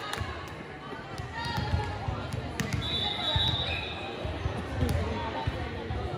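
A volleyball bouncing on a hardwood gym floor with repeated low thumps, under indistinct voices echoing in a large hall. A short, steady high-pitched tone sounds about three seconds in.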